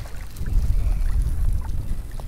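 Wind buffeting the microphone over choppy open water, a steady low rumble, with faint small splashes of water at the surface.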